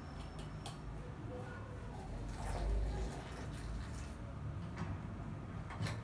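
Faint clicks and taps of glass teapots and jars being handled on a table, with a soft low bump about halfway through.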